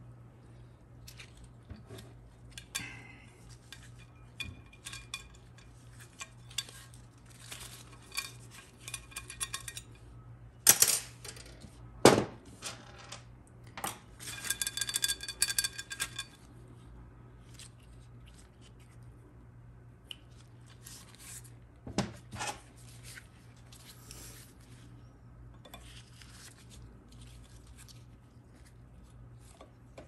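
Steel tools clicking and tapping against a Ford 4R100 aluminium valve body as a seized valve is worked loose, with a steady low hum underneath. About a third of the way in come two sharp knocks, then a few seconds of ringing metallic rattling, and later another short pair of knocks.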